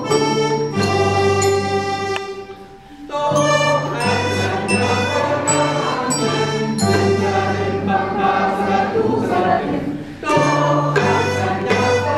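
Children's instrumental ensemble playing, led by the sustained reedy chords and steady bass notes of a piano accordion, with struck notes from a wooden bass xylophone. The music thins and briefly dips about three seconds in and again just before ten seconds, then carries on.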